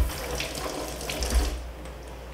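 Cold water running from a kitchen tap over blanched cuttlefish as it is rinsed, fading out near the end, with a knock right at the start.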